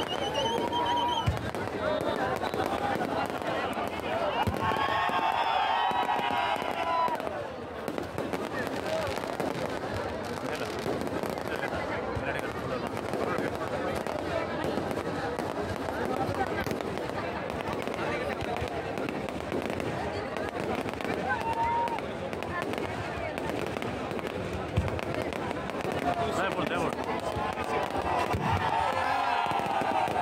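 Fireworks going off overhead in a dense, continuous crackle, with a couple of sharper bangs. Under them is a crowd of spectators talking and shouting, whose voices swell about five seconds in and again near the end.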